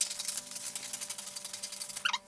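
Scissors cutting along a line through fabric: a fast, even run of small crisp snipping clicks.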